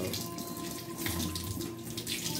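Kitchen tap running water into a stainless steel sink in a steady splashing hiss, as pansit-pansitan leaves are rinsed of soil.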